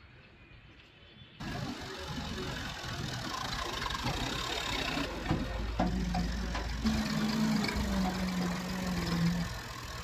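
Diesel tractor engine running, coming in abruptly about a second and a half in after a quiet stretch. A steady hum joins it for a few seconds in the second half.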